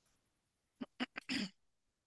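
Mostly quiet, then a cluster of short throat and mouth noises from a person just under a second in, lasting about half a second.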